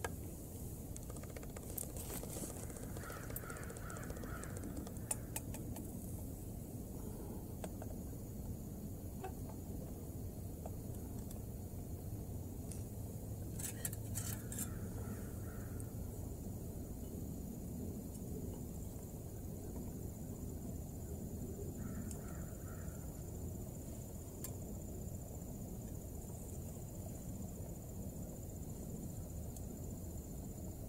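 Small canister gas stove burning steadily under a metal canteen cup of simmering soup, with a few light clinks of a spoon against the cup and three short faint calls.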